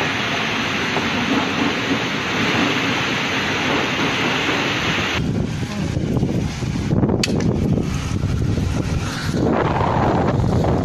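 Storm wind and heavy rain as a dense, steady rush, cutting off suddenly about five seconds in. Then gusts of wind buffeting the phone's microphone in a dust storm, with a sharp click about seven seconds in.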